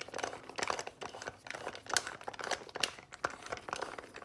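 Irregular light clicks and small metal knocks as the retaining nut is worked onto the buffer tube down the bolt hole of a wooden Remington 1100 stock, with rustling of the parts being handled.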